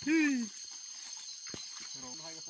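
A person's voice in one short drawn-out vocal sound that falls in pitch, over the first half second. After it comes a quieter stretch with a steady high-pitched drone and a single click about a second and a half in.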